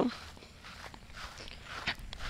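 Faint footsteps of a person walking over grass, soft and irregular.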